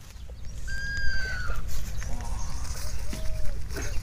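Animal calls outdoors: a high, steady whistle-like call lasting almost a second about a second in, then fainter, lower arching calls later on.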